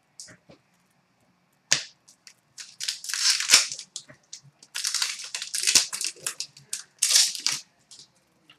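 Foil wrapper of a hockey card pack torn open and crinkled by hand: a sharp rip a little under two seconds in, then several seconds of crackling, rustling handling in bursts.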